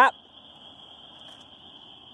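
A short shouted "Yep!" at the start, then quiet outdoor background with a steady high-pitched tone running under it.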